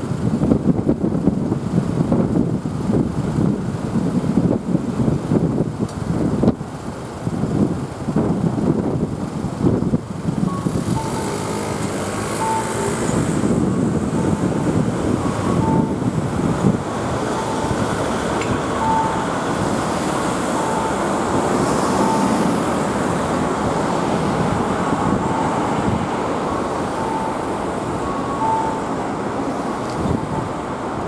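Road traffic: cars and vans running and moving off, with wind gusting on the microphone during the first ten seconds. From about ten seconds in, a short faint beep repeats about once a second.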